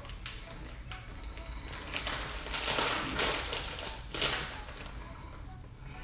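Plastic bag of shredded mozzarella crinkling as it is handled and cheese is shaken out of it, in a few rough rustles between about two and four and a half seconds in.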